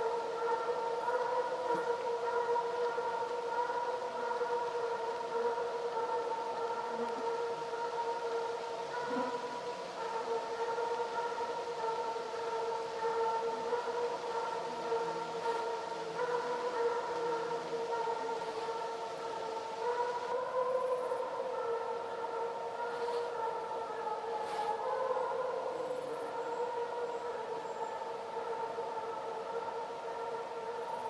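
A steady, continuous whine held at one pitch with overtones above it, wavering briefly about 20 and 25 seconds in.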